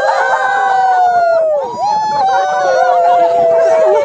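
Several voices holding two long, high notes together, the first about a second and a half and the second about two seconds, each falling away at its end.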